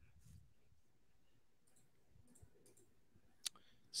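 Near silence, broken by one short, sharp click about three and a half seconds in.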